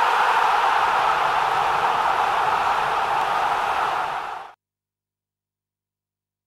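Steady rushing noise of an animated logo intro's sound effect. It cuts off quickly about four and a half seconds in.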